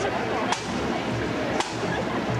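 Marching pipe band drums beating a sharp, regular crack about once a second, two strikes here, over street crowd noise.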